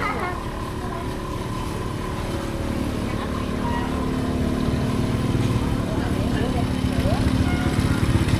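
Motor scooter engines running close by, one hum steadying a few seconds in and growing louder toward the end as a scooter comes alongside, with voices in the background.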